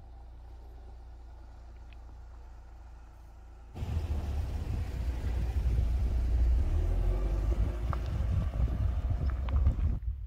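Fiat Toro pickup driving slowly over a sandy dirt track: a steady low rumble that turns louder and rougher about four seconds in, with tyre and body noise from the soft, uneven ground.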